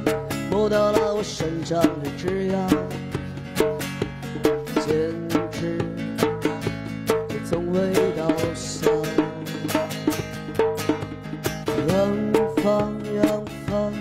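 A man singing live to his own acoustic guitar, strummed in a steady rhythm with sharp, crisp strokes under the gliding vocal line.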